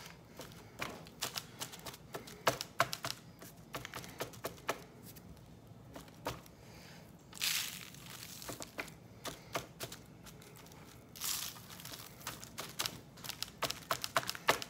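Hands patting dry spice rub onto raw steaks on a wire cooling rack over parchment paper: many small clicks and crackles as loose rub and pepper flakes drop onto the paper. Two brief rustles about seven and eleven seconds in as a steak is lifted and turned over.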